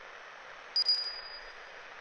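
A single high, bright metallic ping about three-quarters of a second in, struck as a quick little cluster and ringing for about a second, over a steady soft hiss.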